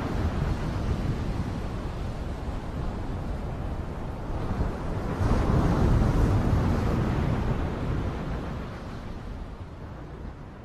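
Steady rushing wind noise on the microphone, swelling about five seconds in and then fading out near the end.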